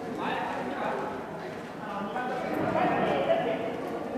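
Several people talking, with a single sharp knock about three seconds in.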